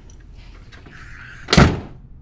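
A door swung shut and closing with a single loud bang about one and a half seconds in, preceded by a brief soft swish as it swings.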